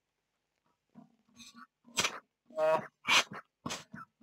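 Neonatal bag-valve-mask resuscitator squeezed with its outlet blocked, so its pop-off (pressure-relief) valve vents in several short hissing puffs, one with a brief squeaky tone, starting about a second in. The venting is the sign that the squeeze has reached the valve's limit, generally 30 to 40 cm of water pressure, and the excess air is blown out rather than into the lungs.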